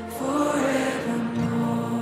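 Slow contemporary worship song played by a band: a voice holds long sung notes, one rising early and one held through the second half, over steady sustained low accompaniment.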